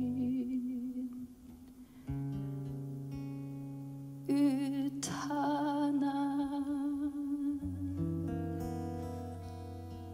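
Live jazz vocal and guitar: a woman's voice sings long held notes with a wavering vibrato over sparse, ringing plucked guitar chords. After a brief lull the guitar comes in about two seconds in, the voice enters a couple of seconds later, and a new chord sounds near the end.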